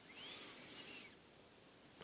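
A faint, high bird call that rises and falls once in pitch during the first second, over near-silent background hiss.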